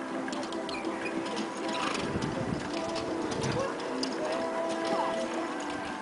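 Indistinct distant voices carrying across an open arena, with scattered light clicks from a pair of ponies trotting over sand with a carriage.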